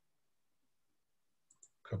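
Near silence on a video-call line, broken by two faint, short clicks about one and a half seconds in, just before a voice begins.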